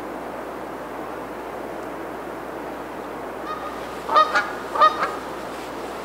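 Canada goose honking: a faint short call about three and a half seconds in, then two louder honks about half a second apart, over a steady background hiss.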